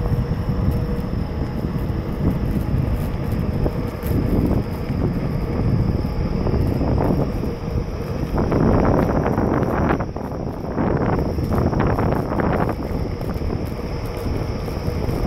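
Wind buffeting the microphone of a rider moving along on a Onewheel electric board: a loud, uneven rumble that gusts harder in the second half.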